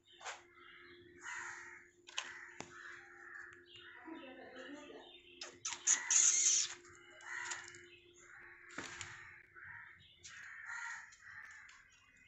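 Harsh bird calls repeated many times over a faint steady hum, the loudest a brief sharper burst about halfway through.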